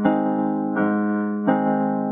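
Keyboard music: a slow sequence of sustained chords, a new chord struck about every three quarters of a second.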